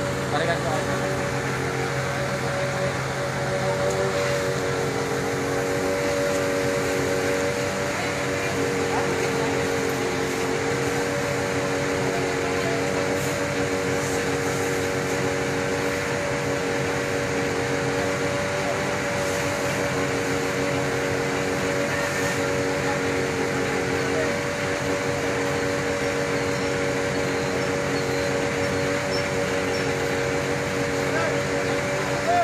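Fire truck engine running steadily, giving a constant, even drone.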